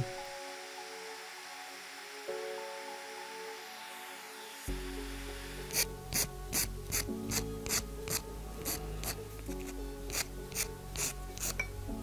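Background music alone at first; then, about five seconds in, quick back-and-forth rasping strokes of a fine fret saw cutting a small wooden lure blank, about three strokes a second, over the music.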